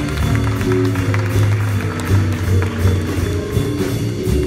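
A student jazz big band playing live, with saxophones, trumpets and trombones over piano and rhythm section.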